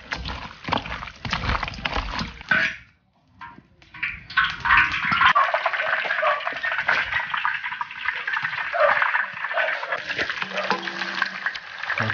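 Hands squelching and kneading starch-coated marinated chicken pieces in a steel bowl. After a short pause, a steady sizzle of the chicken pieces frying in hot oil in an iron wok.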